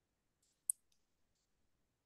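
A single short, sharp click about two-thirds of a second in, with a few much fainter ticks just before it, in an otherwise quiet pause.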